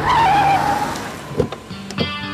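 Tyres screeching for most of the first second, then a thud about a second and a half in, over background music.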